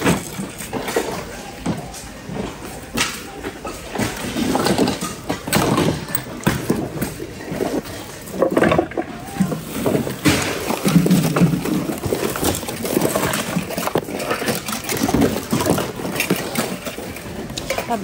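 Hands rummaging through a bin of mixed secondhand goods: irregular knocks, clatters and rustling as items are moved, over indistinct voices.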